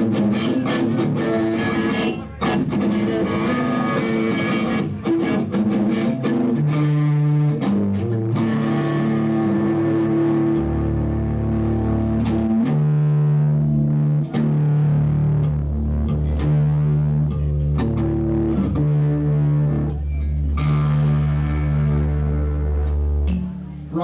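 Live noise-rock trio playing: electric guitar with drums and cymbals, and a heavy bass guitar line coming in about ten seconds in. The music stops just before the end.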